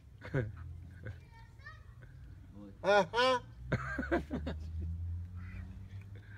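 A small plastic toy horn blown in two short, loud notes about three seconds in, with weaker toots around them.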